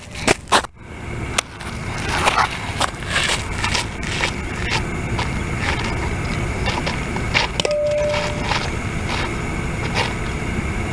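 Steady outdoor rumble and hiss, with several sharp knocks in the first second and a half and a brief steady tone about eight seconds in.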